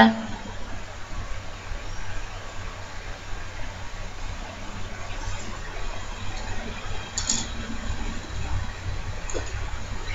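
Hands squeezing and scooping a moist mashed-potato donut mixture in a glass bowl: soft, uneven wet squishing and rustling, with a light click about seven seconds in.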